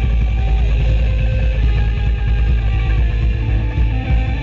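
A progressive rock band playing: electric guitar lines with held notes that bend and slide, over bass and drums.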